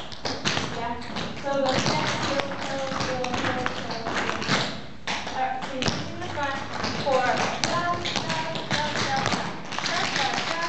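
Tap shoes striking a wooden studio floor: quick, irregular taps from several dancers stepping through heel-toe tap steps, with a voice talking over them.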